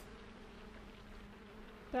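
A faint, steady buzzing hum with no music or speech.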